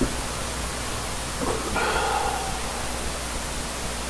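Steady hiss of recording or broadcast noise, with no music or voice. A faint brief sound rises out of it about two seconds in.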